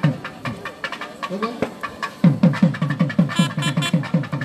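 Festival drumming: a fast rhythm of deep drum strokes, each dropping in pitch, mixed with sharp slaps. The deep strokes are densest in the second half, and a brief high, held note sounds near the end.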